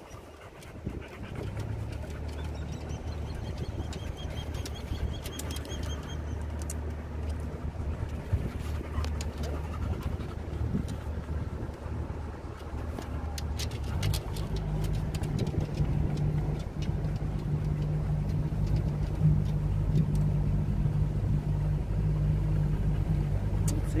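Boat's outboard motor running at low speed, a steady low hum that rises in pitch and gets louder a little past halfway through.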